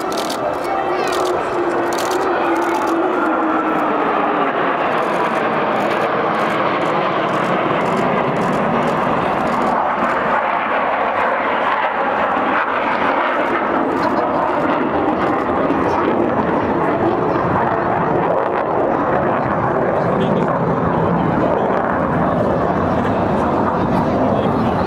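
Jet engines of a formation of military jets flying over the airfield: a loud, steady roar, with a tone falling in pitch over the first few seconds as the aircraft pass.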